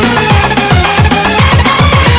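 Indonesian dugem-style electronic dance remix playing loud from a DJ mix: a fast, steady kick drum, each beat a booming low drop, under repeating synth lines.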